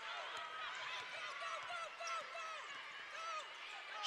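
Basketball shoes squeaking on a hardwood court: many short, high chirps in quick succession over a faint arena background.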